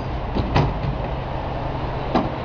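Metal delivery flap of a large automated vending machine knocking twice in quick succession, about half a second in, as it is pushed open to take out a purchase. Steady street traffic rumble runs underneath.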